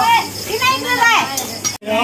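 Voices of a group talking over each other, with high-pitched children's voices calling out; the sound drops out for an instant near the end.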